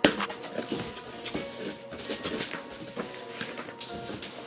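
Off-camera handling of a studio monitor's packaging: a sharp knock at the start, then a run of irregular rustles and small clicks as the speaker is taken out of its box. Faint background music plays underneath.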